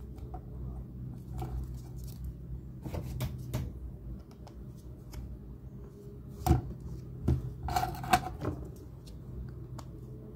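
Small plastic clicks and knocks as foam-tyred plastic wheels are pressed onto the axle shafts of a small gearbox motor and handled, the loudest knock about six and a half seconds in and a quick cluster of clicks around eight seconds. A steady low hum runs underneath.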